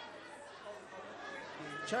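Low background chatter of many voices in a large parliamentary chamber, with a man's voice starting to speak just before the end.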